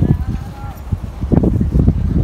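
Footsteps crunching over sandy ground as the person filming walks, with wind buffeting the microphone and a low rumble.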